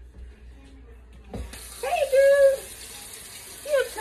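A kitchen tap is turned on with a knock about a second and a half in, then hot water runs from it steadily. A short high voice sounds over the running water, loudest around the middle.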